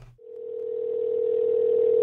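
A single steady telephone tone heard over a phone line, growing louder over about two seconds and then cutting off.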